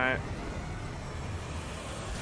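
A steady rushing noise with a deep rumble underneath, a sound effect from the film trailer's soundtrack.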